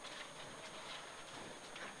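Faint, even noise of a Mitsubishi Lancer Evo 9 rally car driving at speed along a gravel stage.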